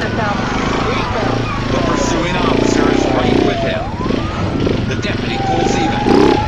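A siren wailing, its pitch sweeping slowly up and falling away twice, over a steadily running vehicle engine.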